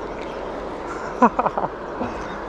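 Steady rush of a flowing river, with a man's short laugh in quick pulses a little over a second in.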